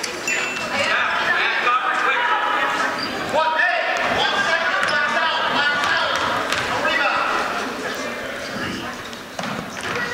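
Voices and chatter in a gymnasium during a free throw, with a few basketball bounces on the hardwood floor as the shooter dribbles before shooting.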